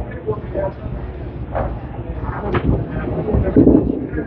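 Candlepin bowling alley ambience: a steady low rumble of balls rolling on the wooden lanes, with background voices. It gets louder just before the end, as a candlepin ball is released and rolls down the lane.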